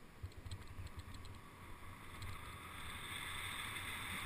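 Mountain bike coasting down a paved road: irregular light clicks and rattles from the bike in the first half, then wind noise on the camera microphone rising as the bike picks up speed.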